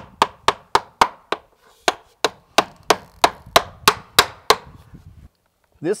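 Hammer driving nails into sheet-metal flashing with a quick, even run of sharp blows, about three a second. The blows stop about four and a half seconds in.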